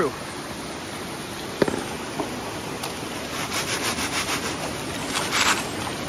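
Gravel being shaken in a gold-panning classifier sieve over a bucket, a rapid rhythmic scraping rattle that starts about halfway through, with the steady rush of a stream underneath.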